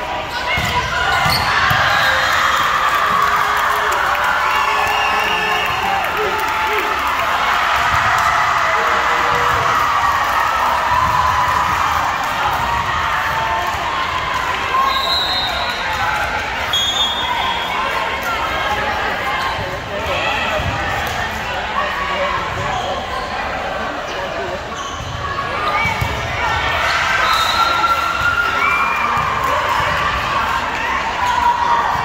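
Volleyballs being hit and bouncing on a hardwood gym court under a steady din of players' and spectators' voices in a large hall.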